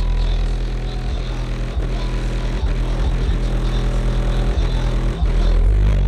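Loud deep bass music from a car audio system with four DS18 EXL 15-inch subwoofers in a Q-Bomb box, heard from outside the car. The system is tuned to peak around 35–40 Hz.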